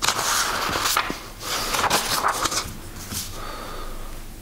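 Sheets of paper rustling and crackling as they are leafed through by hand on a desk, in two busy spells with a short lull between.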